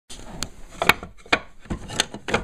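Scrap-wood and thin plywood offcuts knocking and scraping against each other as a hand rummages through a scrap bin: about five irregular wooden clacks.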